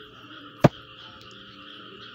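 A single sharp click about two-thirds of a second in, from tapping to press an on-screen button, over a faint steady hiss.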